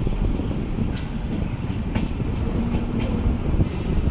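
Moving Indian Railways passenger train heard from an open coach door: a steady low rumble with a few sharp clacks from the wheels on the track, roughly once a second.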